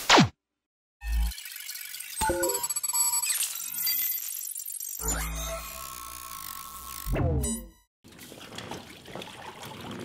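Music and sound effects of a channel subscribe animation. It opens with a short falling whoosh, then a deep hit about a second in, chiming tones and sliding pitches, another low hit about five seconds in, and a falling slide that cuts off just before eight seconds.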